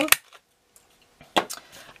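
Handheld half-inch circle punch snapping through the card of a box lid, one sharp click right at the start. About a second and a half later come two more sharp, lighter clicks.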